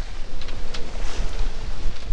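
Strong wind buffeting the microphone: a loud, gusting low rumble over a steady rush of noise.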